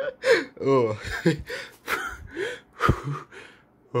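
A man gasping for breath with short, strained voiced sounds between the breaths. There are about a dozen bursts in four seconds, with no words.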